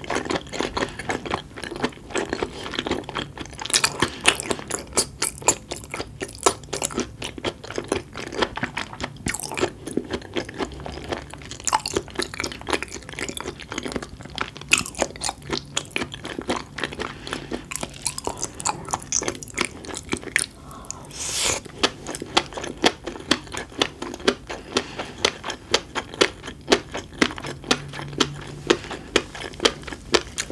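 Close-miked chewing of raw seafood, a steady run of wet clicks and smacking mouth sounds with occasional louder crunches, the loudest about three-quarters of the way through.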